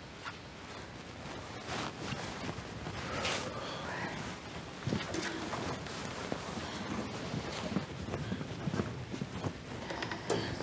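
Quiet room noise with scattered small knocks, clicks and rustles of objects being handled.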